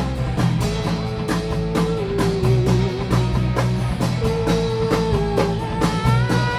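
Rock band playing an instrumental passage with no vocals. A drum kit keeps a steady beat with cymbal hits under a steady bass line, while a guitar holds a long, slightly bending melody note.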